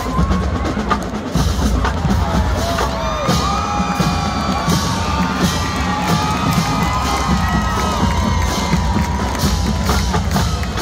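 Marching band playing: a brass melody over bass drums and drumline, with a crowd cheering.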